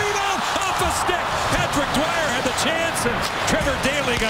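Hockey arena crowd noise during live play, with frequent sharp clacks of sticks and puck on the ice.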